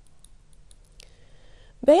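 A quiet pause with a few faint, sharp clicks and a faint thin tone from about a second in; a woman's voice starts speaking near the end.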